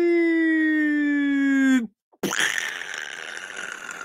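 A man vocally imitating a crash: a long voiced tone sliding slowly down in pitch, like a falling plane, that breaks off about two seconds in. After a brief pause comes a hissing mouth-made explosion that fades away.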